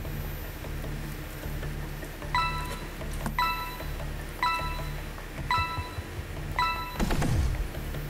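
Quiz-show answer countdown: five short electronic beeps about a second apart, ticking off the five-second decision time over a low background music bed, followed by a low thud near the end.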